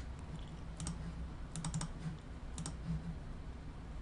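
Computer mouse buttons clicking: a single click about a second in, a quick run of three soon after, then a double click, over a faint steady low hum.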